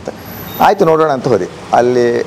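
Speech: a man talking in two short phrases, with a faint thin high whine briefly near the start.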